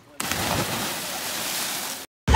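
Three people diving off a bridge and hitting river water almost together: a sudden loud splash about a quarter second in, followed by a steady rush of splashing and churning water.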